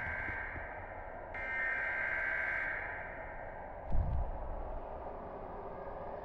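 Horror-film sound design: a high, eerie held tone cuts in sharply, swells and fades out, over a low steady rumble. A deep low boom comes about four seconds in.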